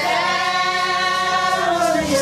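Group of women singing a Vodou song together, holding long notes that slide down in pitch near the end.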